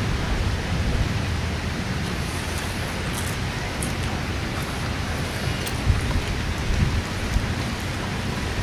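Wind blowing across the microphone: a steady low rushing noise, with a few louder buffets in the last few seconds.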